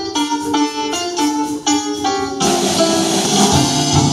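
Live band playing an instrumental passage. A melody of separate, clearly pitched notes is played on its own at first. Then drums, cymbals and bass come in together about two and a half seconds in, and the band plays on at a louder, fuller level.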